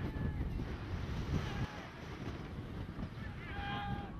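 Wind buffeting the camera microphone with a steady rumble, under the distant voices of players on the field; one player shouts near the end.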